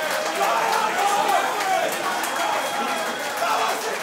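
Arena crowd shouting and cheering, with several voices calling out over one another during a knockdown count.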